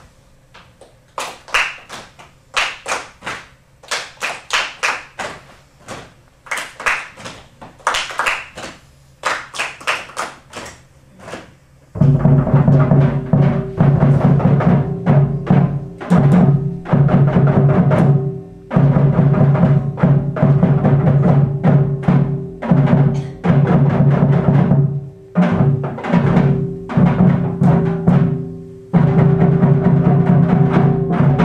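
Drum music played by a children's ensemble: light, sparse taps for the first dozen seconds, then loud, dense drumming with a booming low ring from about twelve seconds in, broken by a few short pauses.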